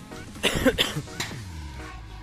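A man coughing, a short run of harsh coughs about half a second in, over steady background music.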